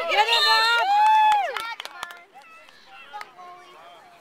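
Excited shouting and cheering voices, overlapping, with one long high-pitched yell that breaks off about a second and a half in. After it, only faint scattered voices.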